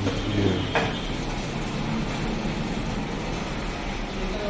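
Steady low mechanical rumble of workshop background noise, with a single sharp knock about a second in.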